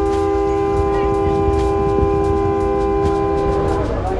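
Riverboat horn sounding one long, steady multi-tone blast that cuts off just before the end, over a low rumble.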